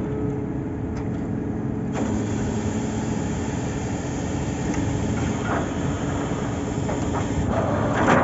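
Borewell drilling rig's engine and machinery running steadily with a constant drone and hum, its note shifting slightly about two seconds in.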